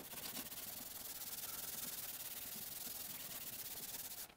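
A cloth rubbing finish into a white oak board, a steady scrubbing that stops just after the end.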